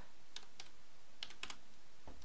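A few scattered keystrokes on a computer keyboard as a short word is typed, each a light, separate click.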